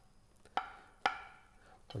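Two crisp knife strikes, about half a second apart, as a chef's knife cuts through avocado and taps down onto a wooden cutting board, each with a short ringing tail.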